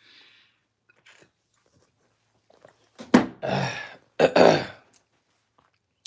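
Right after a swig of straight liquor from the bottle, a man lets out two harsh, raspy coughing exhales about three seconds in, each under a second long and a fraction of a second apart.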